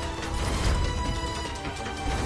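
Background music from a TV drama score, with a heavy low beat under sustained tones.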